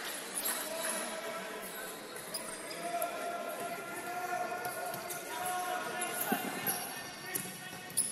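Indoor futsal game sounds: a ball being kicked and bouncing on the hardwood court, with scattered short knocks, over the voices of players and spectators calling out in the hall.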